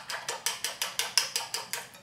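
Chopsticks beating a mixture in a ceramic bowl: a quick, even run of clicks, about five or six a second, that stops near the end.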